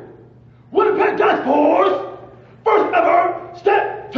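Loud shouted voice calls in three bursts: a long one of about a second and a half starting near the first second, then two short ones close together near the end.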